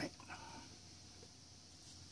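Near silence: faint room tone with a low steady hum, after the tail of a spoken word at the very start and a brief faint sound about a third of a second in.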